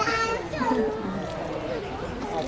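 Overlapping chatter of onlookers, with children's voices among them; no sound from the panda stands out.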